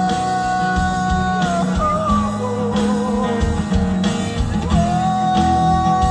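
A man singing live with an acoustic guitar, amplified through a PA speaker: he holds a long note, sings a short wavering phrase, then holds another long note near the end.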